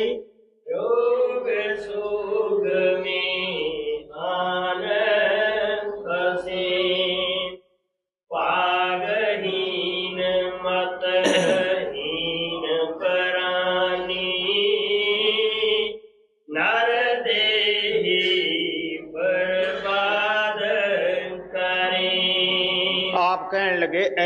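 A solo voice chanting lines of a devotional hymn (shabd) in three long held phrases, each ending in a brief pause.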